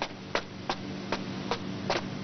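A run of evenly spaced sharp knocks, about two and a half a second, over a low steady hum.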